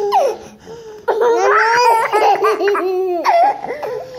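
Toddlers laughing in high, rising and falling peals. The laughter dips briefly just after the start, then comes back about a second in and carries on.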